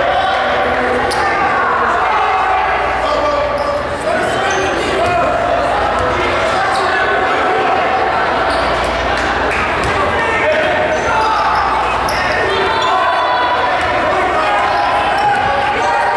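A basketball bouncing on a hardwood gym floor, under steady overlapping chatter of spectators and players in a large gym.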